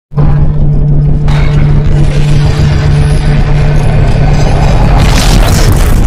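Logo-intro sound effects: a deep boom that starts suddenly and carries on as a steady low drone, with a rushing whoosh building near the end.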